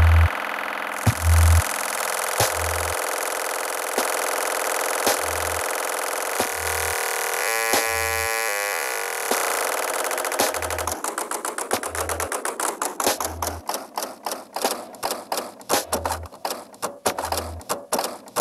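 Electronic music played on a Korg Volca Sample: short low bass pulses about once a second under a dense noisy texture. Near the middle there is a brief stepped tonal figure. In the second half this gives way to rapid clattering clicks.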